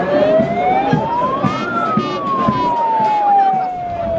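A siren wailing: one slow rise in pitch for under two seconds, then a long, slow fall, over the voices and noise of a crowd.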